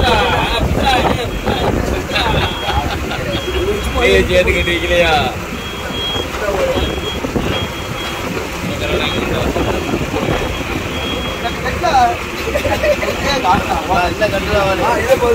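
A fishing boat's engine running steadily under men talking, with a high-pitched beep sounding in short, uneven dashes through most of it.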